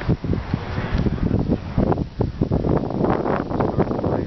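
Wind buffeting the microphone in rough, irregular gusts, heaviest in the low end.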